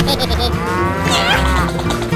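A cow mooing once, a drawn-out call of about a second that rises and falls in pitch, over background music.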